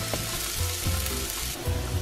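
Minced onion and garlic sizzling in hot olive oil in a nonstick pan, a steady hiss as they sauté.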